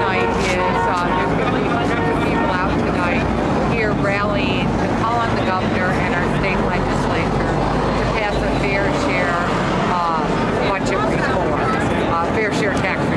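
A woman speaking continuously, close to the microphone, over a steady low background rumble.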